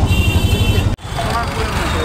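Street traffic noise on a busy town street: a heavy low rumble of engines with a steady high-pitched tone over it. It cuts off abruptly about a second in, leaving quieter street noise with faint voices.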